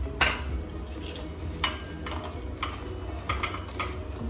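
Roasted cashews being scraped with a spatula out of a nonstick frying pan into a ceramic bowl: scraping and rattling, with about six sharp clinks and knocks spread through.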